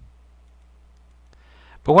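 A single faint computer mouse click about one and a half seconds in, over a low steady hum, as the station step button is pressed. A man starts speaking at the very end.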